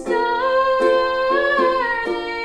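Ukulele strummed in chords under a voice holding one long wordless note, which lifts slightly past a second in and falls near the end.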